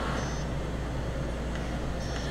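Two short high-pitched beeps from a GreenSmart 2 gas-fireplace remote as its buttons are pressed, one just after the start and one at the end, over a steady fan hum.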